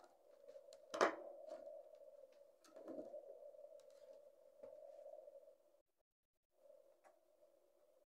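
Faint steady hum from a small power inverter running inside a homemade toolbox power bank, with a sharp knock about a second in and a few softer clicks from handling. The hum cuts out briefly just past the middle, then resumes.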